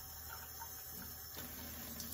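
Faint small ticks and handling sounds. A little past halfway, a quiet trickle of water begins as it is poured from a plastic measuring cup into a metal flan pan.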